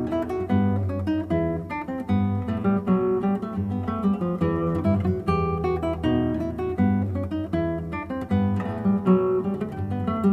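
Classical guitar being improvised on: a steady stream of quick plucked notes over low bass notes.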